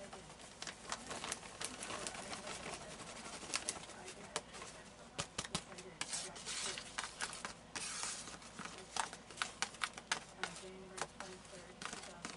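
Cut corn kernels being tipped and tapped out of a plastic container into a plastic vacuum-sealer bag: many light taps and knocks of the container against the bag's mouth, with kernels sliding in and the bag rustling, busiest about six to seven seconds in.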